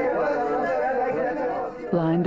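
Many voices chanting aloud together, overlapping and wavering in pitch.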